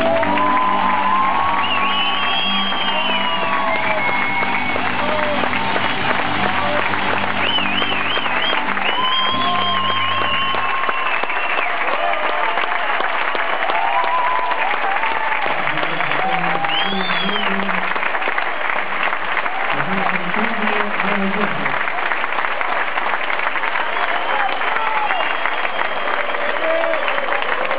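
Theatre audience applauding and cheering at the end of a song. The band's final sustained chord sounds under the applause for about the first ten seconds, then stops.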